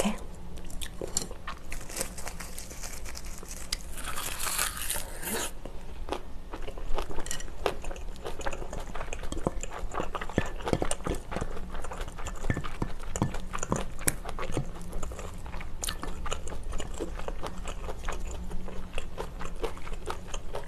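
Close-miked chewing and crunching of a laver-wrapped bite of rice, Spam and kimchi: irregular wet mouth clicks and crunches, with a louder spell about four seconds in.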